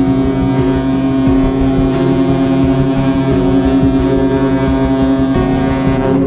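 Cruise ship's horn sounding one long, steady blast that cuts off shortly before the end, over sail-away music.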